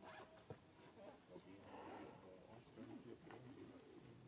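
Faint crinkling and rustling of thin plastic as macaques pick at it and chew on it, with a few small clicks. A short high chirp comes near the end.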